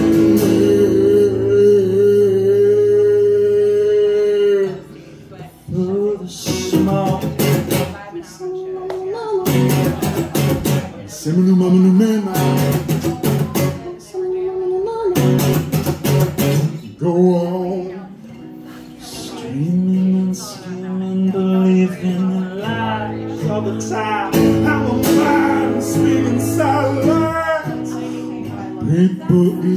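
Live strummed acoustic guitar with a singer, opening on one long held note and then moving into strummed chords and sung phrases.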